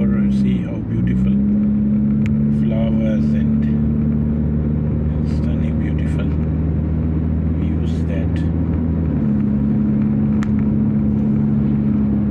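Car heard from inside the cabin while driving: a steady low engine and road drone that dips briefly just under a second in and shifts in pitch about nine seconds in.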